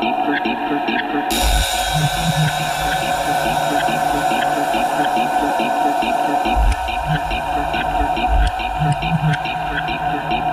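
Dubstep-style electronic music from a DJ mix: a busy repeating percussion pattern, with a bright hiss opening up just over a second in and deep sub-bass hits entering right after, dropping out briefly about two-thirds through, then returning.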